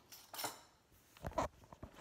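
Handling noise from a phone camera being picked up and moved: a faint knock early, a louder dull bump about halfway through, then a few light ticks.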